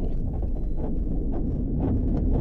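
Low, steady rumble of a PW-5 glider's wheel and airframe rolling along the runway as it slows toward a stop after landing, with light knocks from bumps in the surface.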